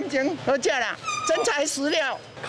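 Only speech: market customers talking in high-pitched voices.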